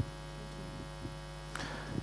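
Steady electrical mains hum from the microphone and PA system, a constant low hum with many evenly spaced overtones. A small click comes right at the start.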